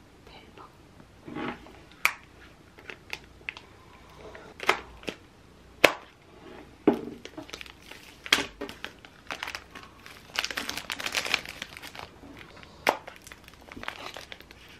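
Small translucent plastic sealing bags crinkling and rustling as they are handled, with several sharp clicks and taps scattered through; the densest crinkling comes about ten seconds in.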